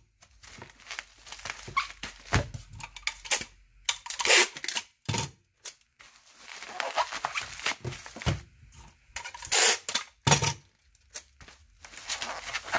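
Clear packing tape pulled off the roll and torn in several separate pulls, with bubble wrap crinkling as the wrapped VHS cassette is handled.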